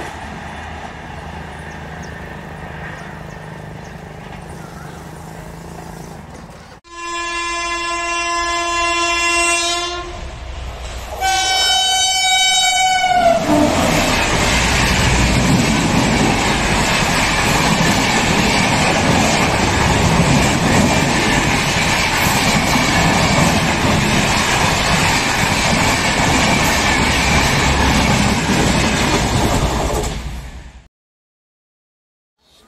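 A passing train's rumble fades away, then a locomotive horn sounds two blasts: the first about three seconds long, the second shorter with its pitch dropping as it ends. A passenger train then runs past close by, with loud, steady wheel and rail noise for the rest.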